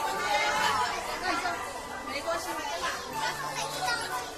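Many children's voices chattering and calling out at once, overlapping without a break.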